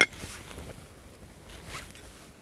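Plastic packet crinkling as it is handled, with a sharp rustle at the start and a brief one near the end.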